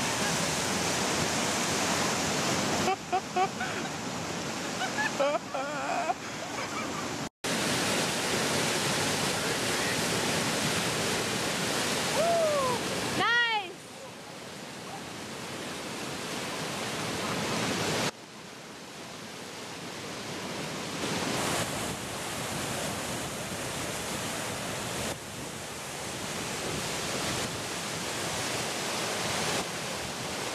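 Whitewater rapids rushing in a steady, heavy roar of churning water. The rush drops sharply twice in the second half and builds back up.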